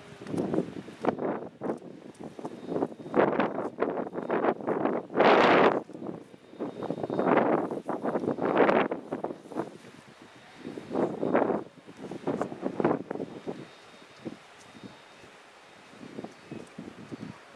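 Gusty wind buffeting the camera microphone in irregular rushes, the strongest about five seconds in, easing off over the last few seconds.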